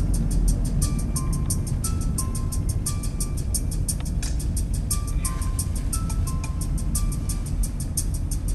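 Music with a steady ticking beat, about four or five ticks a second, and a simple stepping melody, over the constant low rumble of a car driving.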